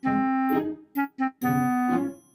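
A short, simple melody played on an electronic keyboard: a held note, two short notes about a second in, then another held note that stops near the end.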